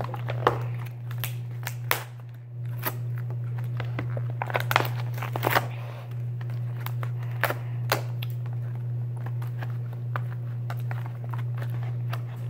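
Plastic-and-card blister packaging of swim goggles crinkling, crackling and snapping in irregular bursts as it is pried and cut open by hand. A steady low hum runs underneath.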